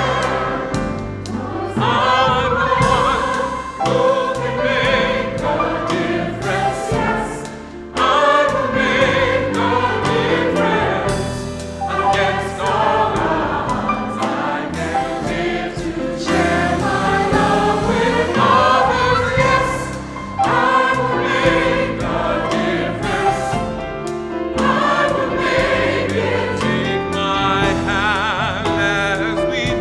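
Large mixed choir singing a gospel song in full voice with band accompaniment, held voiced chords rising and falling over a bass line and drums.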